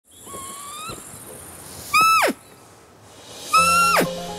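Three loud, high animal cries, each held briefly and then dropping steeply in pitch at the end, over a steady high hiss. Low sustained music sets in with the third cry.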